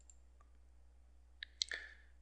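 Near silence, then a couple of faint, sharp clicks about a second and a half in, from a computer mouse button clicking.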